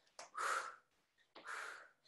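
A woman breathing out hard with the effort of lateral hops: a short breath at the start, then two longer breathy exhales about a second apart.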